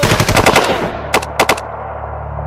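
Automatic gunfire: a fast burst of rapid shots, then two single shots a quarter second apart, after which a low steady hum sets in.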